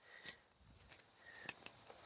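Near silence: faint outdoor background with a few soft, faint clicks.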